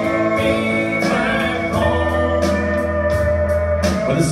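Live country band playing: pedal steel guitar, electric guitars, bass and drums, with sustained steel and guitar notes over a steady bass line and a few drum hits.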